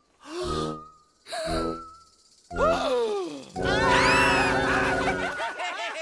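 Cartoon voices making practice ghost "boo" calls over music: three short wavering calls about a second apart, then a longer, louder one.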